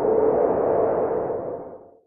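Logo-reveal sound effect: a swelling whoosh with a held low tone that fades away near the end.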